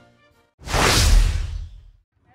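A single whoosh transition sound effect with a deep low rumble underneath. It starts about half a second in and fades out over roughly a second.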